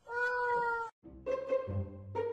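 A cat gives one long, even-pitched yowl lasting just under a second, which cuts off abruptly. Music starts about a second later.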